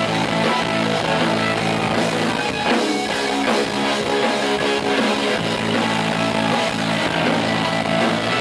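Live rock band playing, with a Stratocaster-style electric guitar to the fore.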